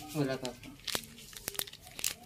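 A short soft bit of speech, then a few sharp crinkles and clicks of a clear plastic document sleeve being handled, about a second in and again half a second later.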